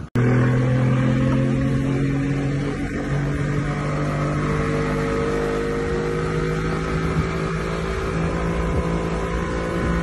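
Yamaha 90 outboard motor running steadily under load while towing a wakeboarder, a constant engine drone that starts abruptly and shifts slightly in pitch about three seconds in, over the rush of the boat's wake.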